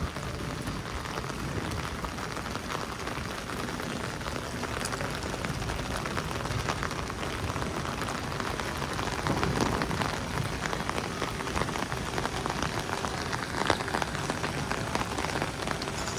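Steady rain falling on wet stone paving and terraces: an even hiss dense with small drop ticks, swelling slightly now and then.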